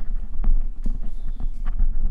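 Microphone handling noise: a run of irregular knocks, bumps and rubs close to the microphone as it is handled between speakers.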